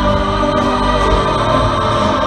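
Massed children's choir singing with musical accompaniment.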